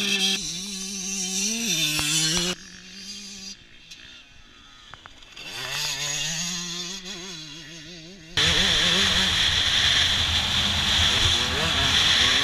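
Yamaha YZ125 single-cylinder two-stroke motocross engine running and revving as the bike sets off and rides away, its pitch stepping and wavering. About eight seconds in, loud wind rush on a helmet camera takes over, with the engine running under it.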